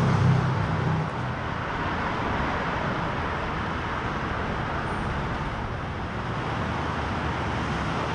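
Steady road traffic noise from a city street, with a low steady engine drone fading out about a second in.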